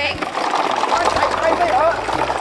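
Voices calling out over the steady rolling noise of a wooden gravity cart's wheels on a gravel track.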